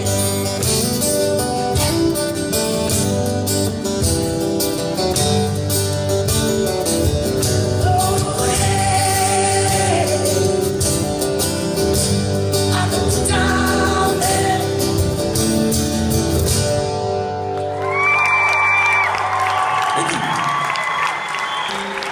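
Several acoustic guitars playing the closing of a country song, with a wordless vocal line over them. About 18 s in the strumming thins out and a few long high notes ring on.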